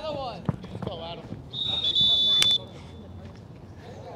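Referee's whistle blown once, a single high blast of about a second that starts about one and a half seconds in, with a sharp click just before it cuts off. Men's voices talk just before it.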